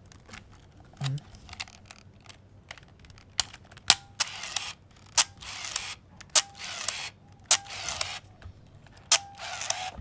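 Hanimex 35 MAF compact film camera firing its shutter repeatedly, about five times in the second half. Each sharp click is followed by a short whir of its built-in motor drive advancing the film.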